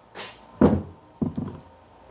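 Hard objects knocked and set down on a workbench: a soft knock near the start, a sharp loud knock about half a second in, and another just after a second followed by a few light clatters.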